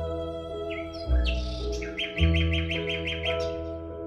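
Recorded music played back through a pair of Magico M9 loudspeakers: sustained string-like tones over deep bass notes that come in about one and two seconds in, with a fast chirping trill of about eight notes a second, bird-like, near the middle.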